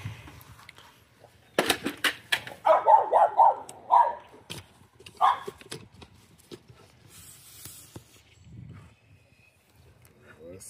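A dog barking: a quick run of short barks about three seconds in and one more about five seconds in, just after a few sharp clicks.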